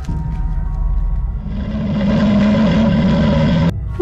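Film soundtrack: a low rumbling drone with held tones that swells loud in the middle and cuts off suddenly near the end.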